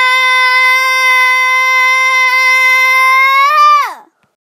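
A child's voice holding one long, loud, high scream for about four seconds, steady in pitch, rising slightly and then dropping away as it cuts off near the end.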